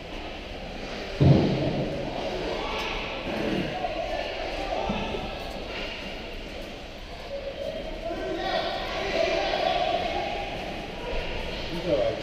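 Indistinct voices of players and onlookers echoing in a large ice rink, with one loud thud about a second in.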